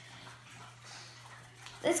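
Faint soft rustle of glitter being shaken from a small container into a plastic bowl of glue, over a low steady hum. A girl starts speaking near the end.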